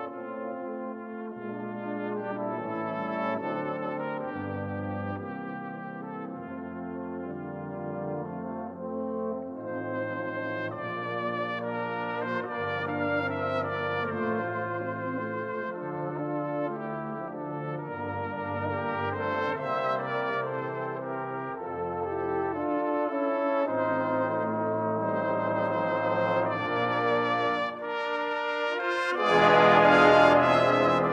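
A brass band plays a cornet solo with band accompaniment: a high melodic line with vibrato over low brass notes that change every second or two. Near the end the full band comes in markedly louder.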